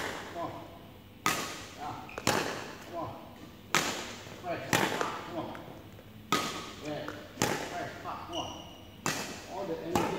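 Badminton racket strings cracking against shuttlecocks in a fast feeding drill, seven sharp hits about a second or so apart, each ringing on in the echo of a large sports hall.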